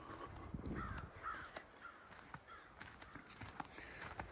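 Faint bird calls repeated a couple of times a second, with low thuds and a few sharp clicks underneath.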